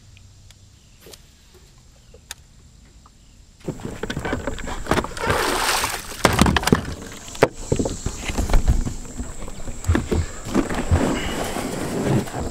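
Bow-mounted trolling motor being lifted out of the water and stowed: water splashing and running off the motor and propeller, with knocks and clunks from the mount and handling. The first few seconds before it are quiet, with a few faint clicks.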